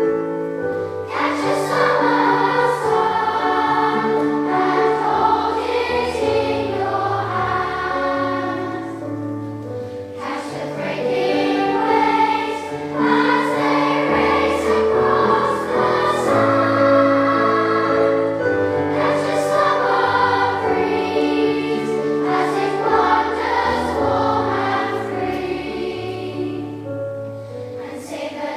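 Children's choir singing over a sustained low accompaniment, with a brief break between phrases about ten seconds in.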